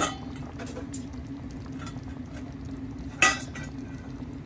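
A metal utensil clinks against a cooking pan twice: a sharp clink at the start and a louder one about three seconds in. A steady low hum runs underneath.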